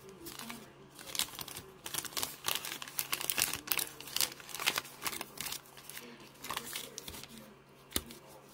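Foil football-card pack wrappers crinkling as they are picked up and handled, an irregular run of quick crackles that thins out near the end.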